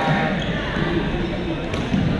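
Badminton play in a sports hall: voices and chatter carry on throughout, and a sharp racket-on-shuttlecock hit comes near the end.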